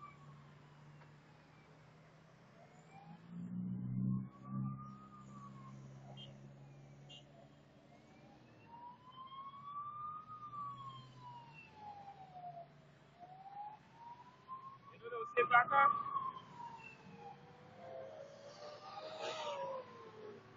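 Fire truck siren wailing, rising and falling slowly, about one cycle every five seconds, as the truck approaches. A second siren tone overlaps near the end, and a low vehicle rumble passes about four seconds in.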